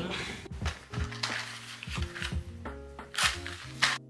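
Background music with held chords, a bass line and a few sharp percussive hits.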